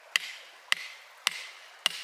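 Hammer striking a chisel set on a geode: four sharp metallic blows a little over half a second apart, each with a short ring. The geode is not yet giving way.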